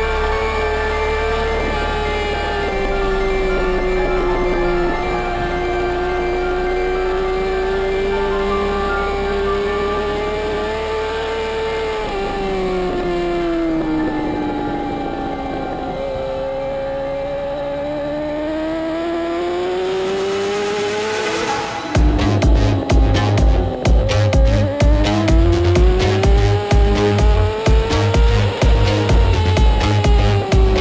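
A superbike engine's note, heard from onboard, rises and falls smoothly with speed through the corners, mixed with electronic music. A rising sweep about 20 seconds in leads into a steady, driving electronic beat.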